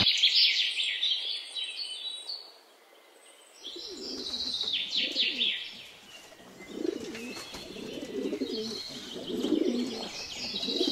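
Domestic pigeons cooing in their cages: repeated low, rolling coos that start about four seconds in and carry on to the end. High bird chirps come mostly in the first two seconds and now and then later, and the sound drops almost to silence briefly around the third second.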